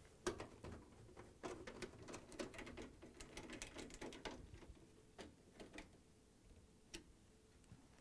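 Faint clicking and scraping of a hand screwdriver driving square-bit screws into a washer's sheet-metal rear mounting bracket, dying away after about six seconds, with a couple of isolated clicks near the end.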